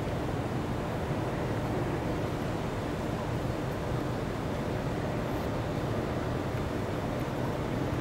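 Steady low wind rumble buffeting the microphone on an open ship's deck, an even noise with no clear tone.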